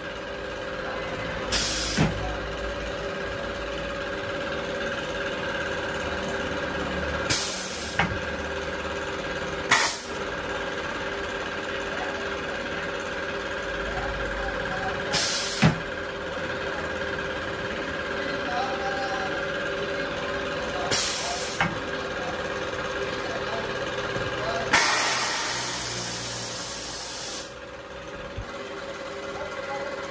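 Pneumatic pillow-packing press working: short hisses of compressed air, mostly in pairs half a second apart, as its air cylinders drive the platen, over a steady machine hum. Near the end a longer hiss runs for about three seconds.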